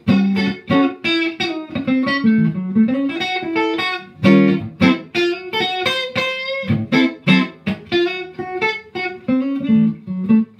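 Clean-toned Stratocaster-style electric guitar playing a quick blues shuffle phrase in A: short single notes and chord stabs built on a dominant seventh with an added sixth (the 13th shape) around the fifth fret, with a short sliding line in the lower notes about two seconds in.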